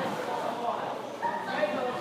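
Children's voices chattering and calling out, several at once, echoing in a large gym hall.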